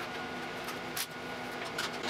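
Light clicks from a small metal laser mirror mount being handled while its knurled brass adjusting screw is turned by finger, the sharpest click about halfway, over a steady room hum.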